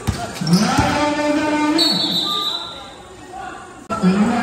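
A basketball dribbled on a hard painted court, two bounces in the first second, under a man's drawn-out shout. A brief high tone sounds about two seconds in.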